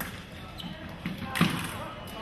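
Sabre fencers' feet thumping on the piste as they move into an attack, the loudest thud about one and a half seconds in, with voices in the large hall behind.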